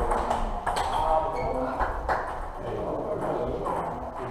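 Table tennis balls clicking off bats and tables at irregular intervals, from several tables in play, with voices talking in the hall.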